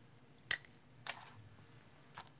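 Small tabletop handling sounds: a sharp click about half a second in, then a weaker click with a brief rustle a little after a second, as a small plastic jewelry bag and a marker are handled.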